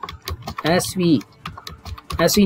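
Typing on a computer keyboard: a run of short key clicks as a line of text is entered, with a few words of speech in between.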